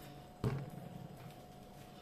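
A single thump about half a second in as bread dough is pressed down flat onto a wooden tabletop by hand, followed by softer handling sounds of the dough.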